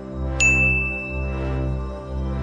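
A single high chime-like ding about half a second in, ringing for about a second and fading, a sound effect marking the reveal of the vote results. Underneath, background music holds low sustained notes.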